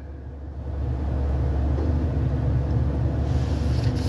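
Car cabin noise: a low engine and road rumble that swells about a second in and then holds steady.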